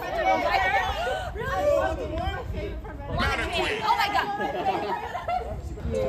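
A group of people chattering over one another, with voices rising high about three seconds in.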